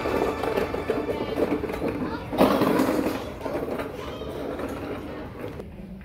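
Indistinct chatter of a group of people talking at once, with no clear words, briefly louder about two and a half seconds in.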